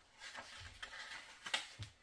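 Paper pages of a handmade junk journal being turned by hand: soft rustling, with a couple of light taps near the end.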